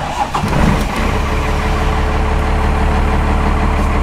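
12-valve Cummins inline-six diesel in a Chevy K30 squarebody starting up, heard from inside the cab. It catches about a second in and settles into a steady idle.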